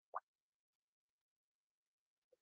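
Near silence, with one faint, short plop just after the start.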